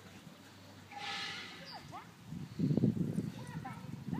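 Dogs in rough play: a short, rough growl about two and a half seconds in, the loudest part, with brief high rising-and-falling whines or squeaks before and after it.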